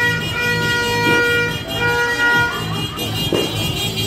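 A horn sounding one long steady note that stops about two and a half seconds in, over loud music with a steady bass beat.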